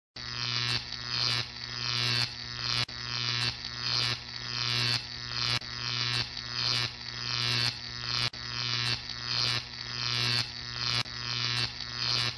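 Electronic buzzing over a steady low hum, pulsing in even cycles about every 0.7 seconds, each cycle with a falling sweep.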